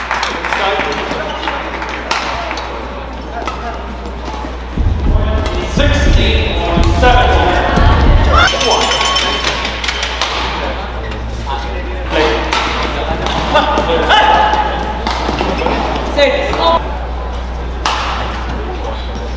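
Badminton rally: the shuttlecock is struck again and again by rackets in sharp clicks, with short squeaks of court shoes. About five seconds in comes a louder stretch of a few seconds with voices.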